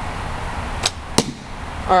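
A hickory snake bow of about 35 lb draw shot once: a sharp snap as the string is released, then the arrow striking the target about a third of a second later.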